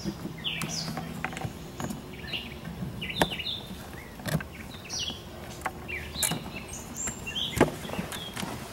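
Small birds chirping again and again, with scattered sharp clicks and knocks from a plug and wires being handled, the loudest click near the end.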